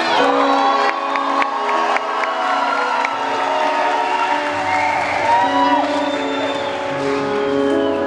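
A live keyboard playing sustained chords of an instrumental passage, with the audience cheering and whooping over it; a low note joins about halfway through.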